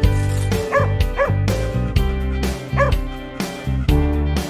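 Upbeat intro music with a beat, over which a small dog yips three times: about a second in, again half a second later, and once more near the three-second mark.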